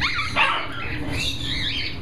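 Parrots calling: two sharp rising calls in the first half second, then shorter whistles and chatter.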